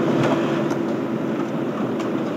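Car engine and road noise heard from inside the cabin: a steady hum, with a faint low drone in it that fades out about midway.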